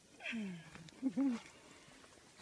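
Wordless human vocal sounds: a low falling groan, then two short hums that rise and fall.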